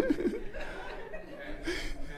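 Chuckling laughter, loudest right at the start and trailing off into softer laughs.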